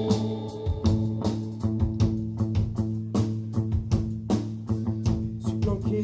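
A rock band playing live: guitar and bass guitar over a steady drum beat of about two and a half hits a second.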